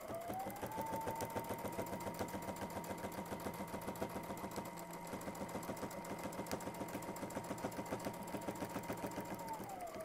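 Domestic sewing machine stitching a curved shape through a quilt sandwich during ruler-work quilting, guided along an acrylic template. Its motor whine rises as it speeds up at the start, holds steady over rapid, even needle strokes, and winds down near the end as it stops.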